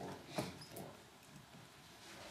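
Marker writing on a whiteboard: a sharp tap of the tip against the board about half a second in, then faint short squeaks as it is drawn across.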